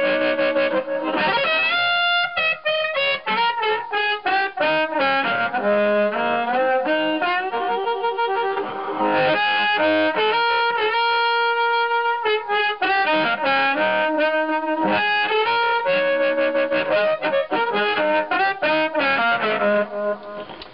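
Amplified blues harmonica played through a 1940s Shure small-shell Brown Bullet harp mic with its original crystal element, into a Sonny Jr. Cruncher harp amp turned up to about 8. The tone is warm. Quick runs of notes, with one long held note about ten seconds in. The crystal element is still working but no longer at full strength.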